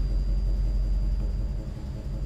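Steady deep rumble with a thin, steady high tone held above it, dipping slightly in loudness near the end.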